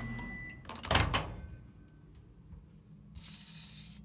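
Microwave oven running with a steady low hum. A short beep sounds at the start, a sharp clunk comes about a second in, and a hiss rises near the end.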